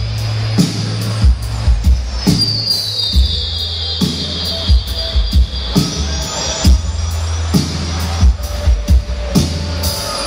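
A live band playing, with sustained low bass notes and a steady beat of drum hits. A high gliding tone falls about two seconds in, holds, then sweeps back up near the end.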